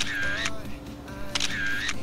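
A camera shutter sound effect, heard twice about a second and a half apart, each a sharp click followed by a short pitched tail, over background music.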